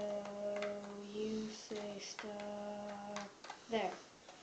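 A person humming one steady note in three held stretches, the first about a second and a half long, with faint clicks of a deck of playing cards being riffled under the thumb.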